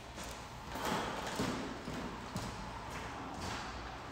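Soft knocks on a hardwood racquetball court floor, about one a second: a racquetball being bounced before the serve, mixed with players' footsteps.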